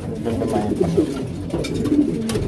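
Several domestic pigeons cooing at once, low overlapping coos, with a few light clicks near the end.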